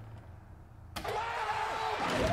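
Wrestling arena crowd, a low murmur that suddenly swells into a loud roar about a second in as a wrestler leaps from a ladder toward the announce table.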